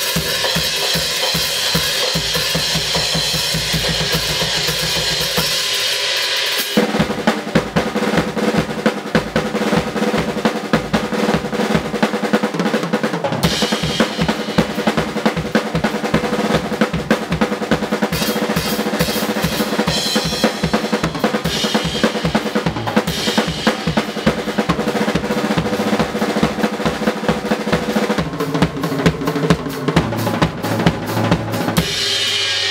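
Acoustic drum kit with Meinl cymbals played in a fast, continuous solo, with rapid bass drum strokes under snare and toms. For the first several seconds a heavy cymbal wash rides over the kick. About seven seconds in the playing turns to louder, busier tom and snare work with less cymbal.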